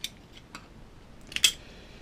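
Small plastic and metal clicks from handling a battery-powered EL wire controller while its batteries are pulled out of the compartment. There is a sharp click at the start, a faint one about half a second in, and a louder short clatter about one and a half seconds in.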